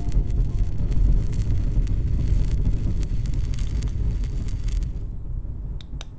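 Gas torch flame blowing steadily as it heats a small silver piece for soldering, a low rushing noise that drops away about five seconds in.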